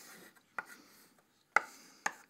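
Chalk on a blackboard: a faint scraping stroke, then two sharp taps about a second apart, the second one louder.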